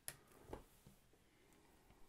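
Near silence, with a faint sharp click at the start and a softer knock about half a second in: a plastic circle template being handled and slid over paper while a marker begins tracing.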